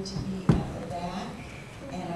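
Voices talking in a large room, with a single sharp thump about half a second in.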